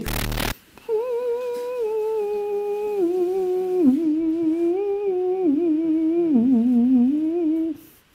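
A brief rush of noise, then a single voice humming a slow, wavering melody whose notes step gradually lower over about seven seconds.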